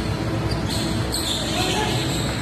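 A basketball bouncing on a wooden gym court during a game, over a steady low background noise and voices.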